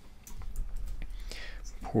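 Typing on a computer keyboard: a run of quick, light key clicks as an IP address is entered, with a soft whispered voice.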